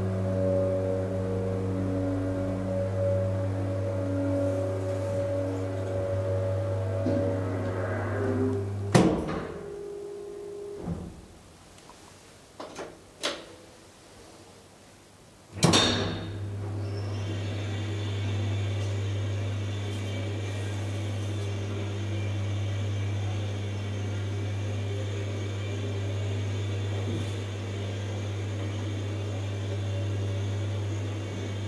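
1980s KONE hydraulic elevator running with a steady low hum. The hum stops with a loud clack about nine seconds in, leaving a quieter stretch with a few clicks. A loud bang comes about halfway through, and then the hum starts again and runs on steadily with a higher hiss over it.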